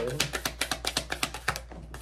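A deck of tarot cards being shuffled by hand: a rapid run of card snaps, about eight a second, that stops about one and a half seconds in.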